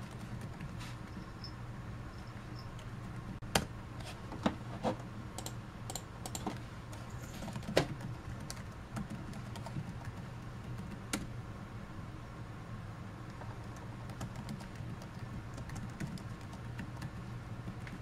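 Acer C7 Chromebook keyboard being typed on as a password is entered: a scatter of irregular key clicks, with a few louder keystrokes. A steady low hum runs underneath.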